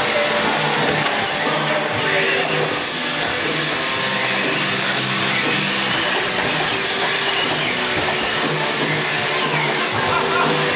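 Electric drive motors of small combat robots whining, rising and falling in pitch, over the steady chatter of a crowd of spectators.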